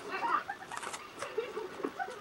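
Jack Russell terrier biting and chewing a raw green bell pepper, a run of quick wet crunches and clicks, sped up to double speed. Faint, high-pitched background TV voices sit underneath.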